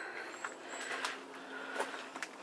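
A person breathing heavily while climbing stone steps, with a few footsteps on the stone.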